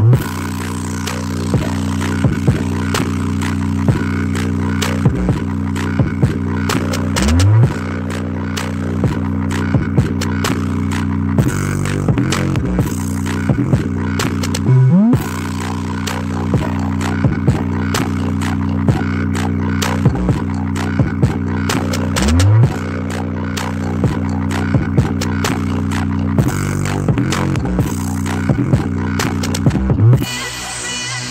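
Bass-heavy electronic music played through a JBL Charge 4 portable Bluetooth speaker at full volume, its passive radiators pumping. Deep sustained bass notes under sharp drum hits, with a rising bass swoop about every seven and a half seconds.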